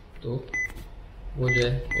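Apartment intercom keypad beeping as its buttons are pressed: two short, high single-tone beeps, about half a second in and near the end.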